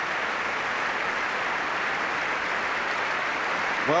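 Large concert-hall audience applauding steadily.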